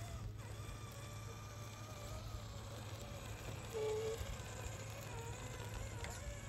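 Electric motor and gear whine of an Axial SCX10 III Early Bronco RC crawler as it drives slowly over a dirt trail, the faint whine wavering in pitch with the throttle. A brief louder tone comes near four seconds in.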